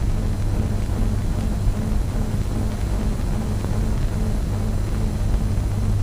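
Low, sustained drone of a background film score under a steady hiss.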